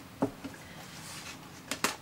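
Hands laying damp two-ply paper kitchen towel into a plastic embossing folder: faint handling noise with a small tap just after the start and two sharp clicks near the end.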